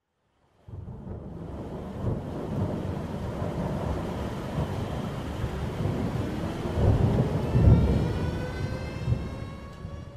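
A deep, thunder-like rumble that swells in under a second after silence and is loudest a little past the middle. Over the last few seconds, rising whistling tones climb in on top, and the rumble fades toward the end.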